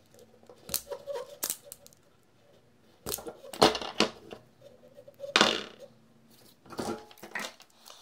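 Self-adjusting wire stripper clamping and stripping insulation off thin hookup wire: a handful of sharp snaps and clicks. The loudest come about three and a half and five and a half seconds in.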